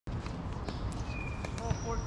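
Scattered sharp pops of pickleball paddles striking the hollow plastic ball, several in quick succession, with voices talking near the end.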